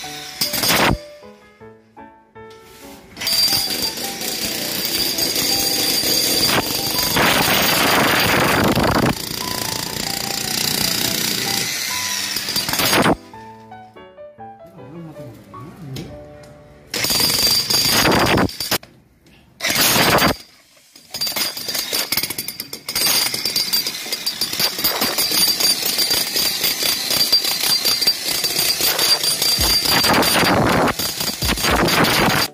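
Handheld electric demolition hammer with a chisel bit breaking up a stone-and-concrete floor, running in long stretches with a few short stops.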